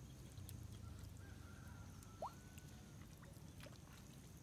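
Near silence: faint field ambience with a few faint ticks and one short rising chirp about two seconds in.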